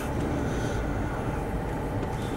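Car engine and road noise heard inside the cabin while creeping along slowly behind another car: a steady rumble.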